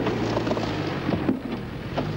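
Range Rover turbo diesel engine running under load as the vehicle drives up a sandy bank, a steady low drone.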